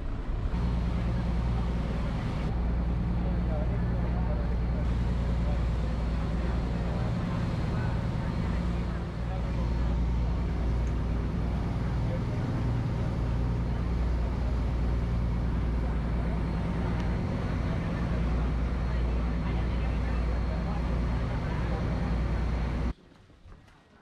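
Tender boat's engine running steadily under way with a low, even drone. It cuts off abruptly near the end.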